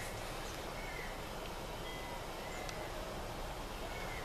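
Steady low background hiss with a few faint, short high chirps.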